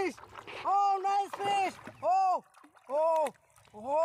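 A person calling out a drawn-out, excited "oh" about five times, rising and falling in pitch. Between the calls, water splashes and churns as a hooked fish thrashes at the surface.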